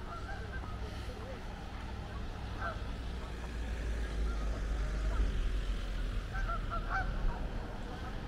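Geese honking in short, scattered calls: a few at the start, a couple a little under three seconds in, and a cluster near the end, over a steady low rumble.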